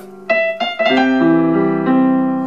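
Casio LK-280 electronic keyboard on its piano voice playing a few quick single notes and then a G7 chord (G with D and F) that rings on and slowly fades.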